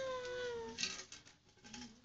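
A toddler's long whining cry: one drawn-out note sliding slightly down in pitch and ending about a second in, followed by a short noisy rush.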